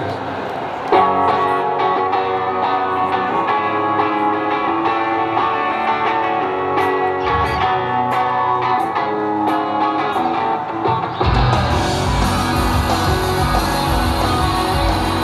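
Live rock band starting a song. A guitar plays the intro from about a second in, and the full band with drums and bass comes in near the end.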